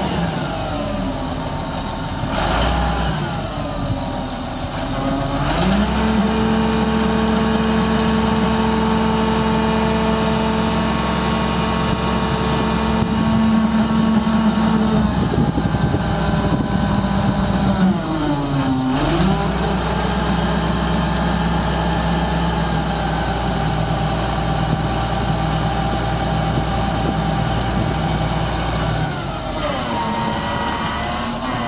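John Deere 644D wheel loader's diesel engine running. It revs up from a lower speed about five seconds in and holds steady high revs, dips briefly past the middle and climbs again, then drops back near the end as the bucket is raised and lowered on the hydraulics.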